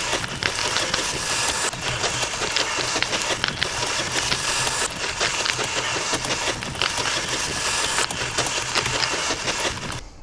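A layered sound-design mix of recorded clips playing back: train-station ambience under a running stream of typing clicks, with flapping-leaves rustles mixed in, at a steady, even level.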